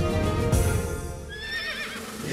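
Music thinning out, then a horse whinnying, a wavering high call, from a little past a second in.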